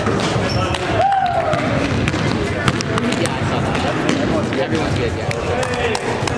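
Basketball game in a gymnasium: the ball bouncing on the hardwood court in a series of sharp knocks, over players' indistinct calls, all echoing in the hall.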